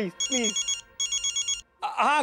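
Telephone ringing: two short bursts of a high, rapidly pulsing electronic ring.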